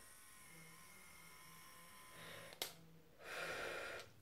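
Faint room tone, then a single sharp click past the halfway point and a person's breath out, like a sigh, in the last second.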